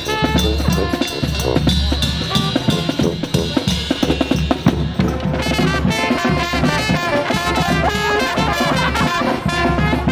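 Live New Orleans-style brass band playing, with trumpet, trombone and saxophone over a drum beat; the horn lines come in more strongly about halfway through.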